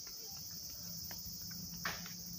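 A steady, high-pitched chorus of insects, with a faint low hum and a brief knock near the end.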